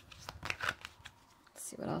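A deck of tarot cards being shuffled by hand: a few short, crisp card flicks and rustles.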